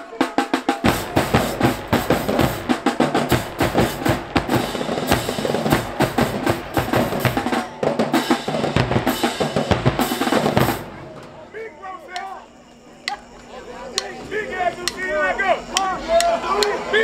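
Marching band drumline of snare drums, bass drums and cymbals playing a fast, loud cadence that cuts off sharply about eleven seconds in, after which voices are heard over the quiet.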